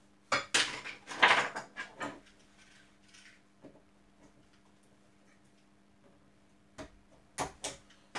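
Small hand tools clicking and clinking against a metal keystone jack and the workbench while network cable wires are set and punched down: a burst of clicks and scrapes in the first two seconds, then a few sharp clicks near the end.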